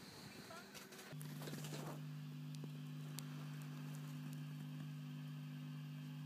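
A low, steady electrical hum that comes in suddenly about a second in and holds, with a few faint ticks over it: mains hum from a powered-up guitar amp and pedalboard rig.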